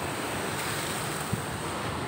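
Ocean surf on a rough sea at an unusually high tide: waves breaking close to the shore and washing in, a steady rushing noise.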